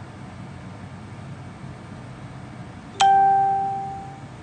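A single chime about three seconds in, starting sharply and fading over about a second.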